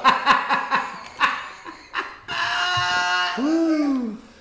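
Men laughing hard: choppy bursts of laughter, then about halfway through a long, high-pitched laugh held on one pitch that falls away near the end.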